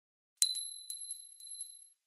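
A high metallic ding, a logo sound effect: one sharp strike about half a second in that rings on as a bright high tone, followed by four lighter clinks, like a coin settling, as the ringing fades out.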